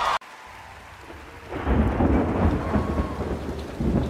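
Thunderstorm: rain hiss with a deep rumble of thunder that swells up about a second and a half in. The preceding music cuts off abruptly just after the start.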